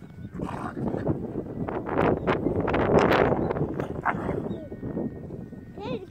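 Two Belgian Malinois puppies play-fighting, growling and scuffling, swelling to their loudest about halfway through and then easing off.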